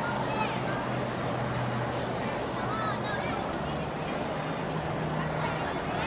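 Steady outdoor background noise with faint distant voices, a low steady hum and a few short high-pitched calls.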